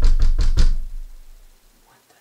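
Loud, rapid knocking on a door: about five heavy blows in quick succession in the first second, then dying away.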